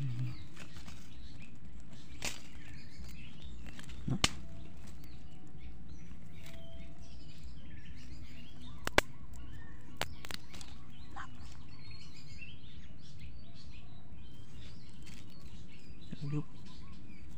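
Birds chirping faintly and steadily in the background, with a few sharp clicks, the loudest about nine seconds in.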